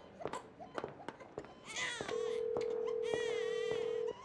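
A young child crying in short wails, while about halfway through a steady telephone tone starts as a call is placed, sounding at one pitch for about two seconds and becoming the loudest sound, with scattered light clicks throughout.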